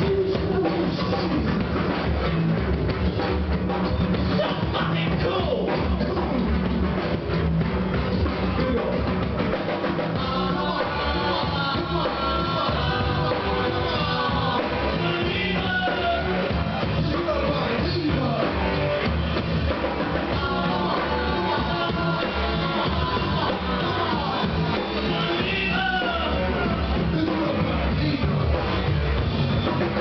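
Live rock band playing: drum kit and electric guitar with a steady beat, and a voice singing over it.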